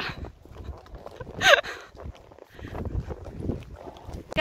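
Horses' hooves clip-clopping on a chalk track as two horses walk, an irregular run of low knocks. About a second and a half in comes one brief call that falls in pitch.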